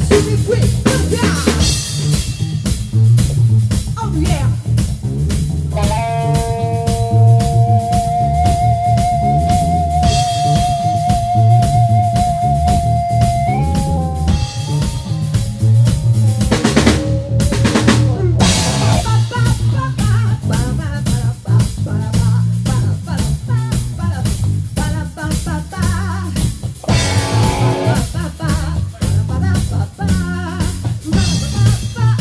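Live rock band playing: electric guitar, bass and a drum kit keeping a steady beat. About six seconds in, a long, wavering held note comes in and lasts some seven seconds before stepping up in pitch.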